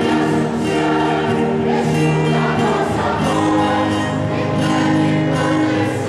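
A mixed church choir of men and women singing together in held, sustained notes.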